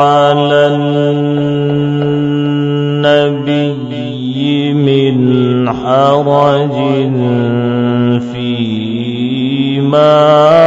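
A man reciting the Quran in the melodic tajweed style, drawing the vowels out into long chanted notes. A long steady held note takes the first half, then the voice turns up and down through a melodic run before settling on another held note.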